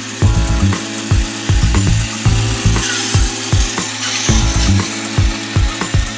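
A battery-powered skirted bump-and-go tin robot toy running. Its small electric motor and gears give a steady buzzing drone, with uneven tinny rattles and knocks as the body jolts about on the wooden tabletop.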